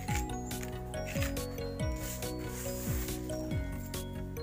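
A hand mixing dry, crumbly potting mix inside a plastic pot: grainy rubbing and scraping of soil against the pot. Background music with a steady beat plays underneath.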